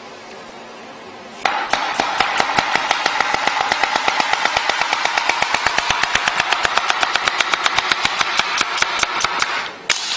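Kitchen knife rapidly chopping celery on a cutting board: a very fast, even run of strokes, about eight a second, starting about a second and a half in.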